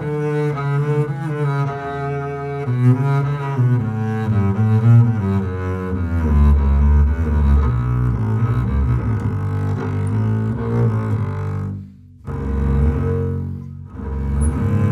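Solo double bass played with the bow: a run of sustained and moving notes, settling into deep low notes about six seconds in, with a brief break near the end before the playing resumes.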